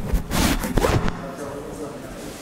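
Rustling and scraping handling noise close to the lectern microphone, as the speaker sets down and arranges things at the lectern. It comes as a burst of crackles in the first second, then dies down.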